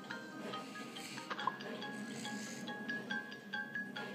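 A light tune of short mallet-percussion notes, a children's tablet game's background music, playing from the iPad's speaker, with one sharp click about one and a half seconds in.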